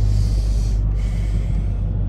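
Ford Mondeo ST220's 3.0 V6 with a Milltek exhaust running at a steady cruise, heard as a low drone inside the cabin. Over it come two short breathy hisses close to the microphone, each under a second, with a brief pause between them.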